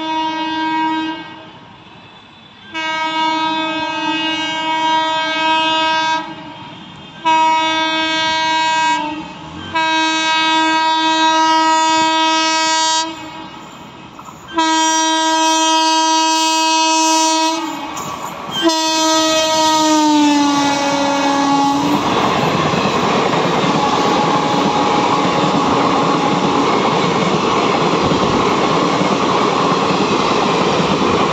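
An Indian Railways WAP7 electric locomotive sounds its horn in a string of long blasts as it approaches at high speed; the last blast falls in pitch as the locomotive passes, about 21 s in. Then the superfast express coaches rush past with a steady, loud wheel-and-rail noise.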